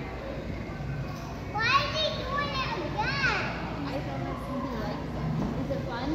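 Children's voices and chatter, with a child's high-pitched calls rising and falling in pitch twice, about a second and a half in and again about three seconds in.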